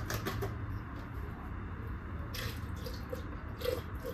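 Milk poured from a carton into a glass blender jug, with two short splashy bursts in the second half, over a steady low hum.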